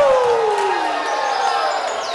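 A congregation shouting and cheering, with one loud voice holding a long "yahoo!" cry that falls in pitch and trails off about a second in.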